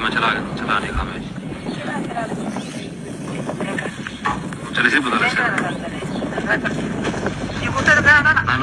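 Men talking in short stretches, in words the recogniser did not write down, over a steady low rumble of background noise.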